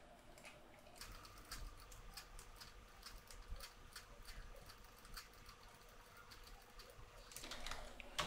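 Near silence with faint, irregular clicks from a computer mouse and keyboard.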